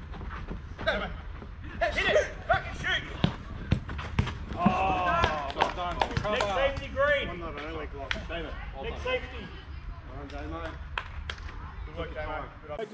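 Footballers shouting and calling to each other during play, with sharp thuds of a football being kicked and struck.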